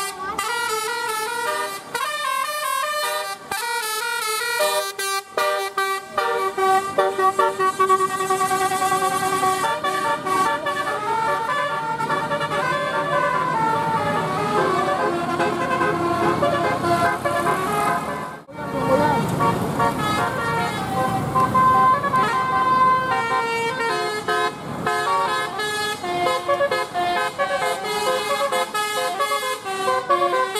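Telolet horns on Indonesian coach buses playing multi-note tunes, the pitch stepping from note to note, with quicker notes at first and longer held notes after. There is a brief break a little past halfway, then more horn tunes over engine and road noise.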